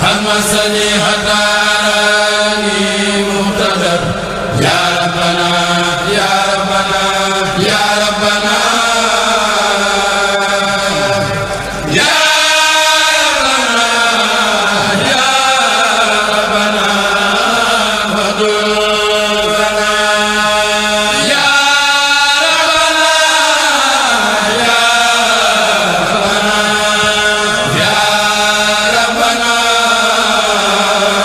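A Mouride kurel of men chanting an Arabic qasida together, in long held, gliding notes. The phrases are broken by short breaks about four and twelve seconds in.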